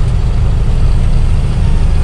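A heavy goods truck's engine running steadily under load on an uphill stretch, with a deep, even rumble and road noise heard from inside the cab.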